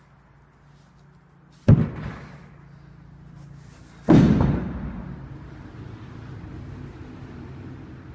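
A 185 lb atlas stone being loaded to a 50-inch height: a sharp heavy thud nearly two seconds in as it lands on the platform, then a bigger, longer-ringing thud about four seconds in as it is dropped back to the floor.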